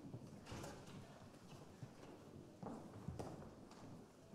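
Faint, irregular footsteps and shoe knocks of several people walking onto a wooden stage, with some shuffling.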